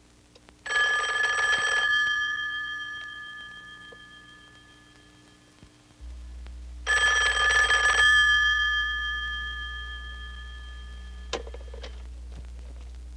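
Telephone bell ringing twice, each ring about a second long, its bell tone dying away over the next few seconds. A single sharp click follows near the end.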